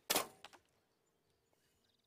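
A recurve bow being shot: one sharp release about a tenth of a second in that fades within half a second, with a small click just after, then near silence.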